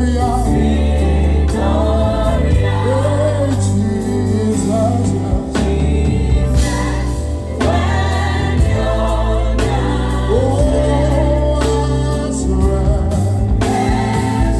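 Live gospel music: a singer's wavering melody over keyboards, a heavy bass and drums.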